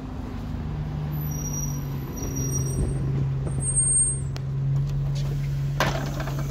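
A double-decker bus pulling up at a stop, its engine running with a steady low hum, with brief high-pitched squeals as it slows. A sharp knock comes near the end.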